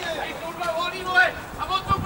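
Football players' voices calling out on the pitch: several short shouted calls in quick succession.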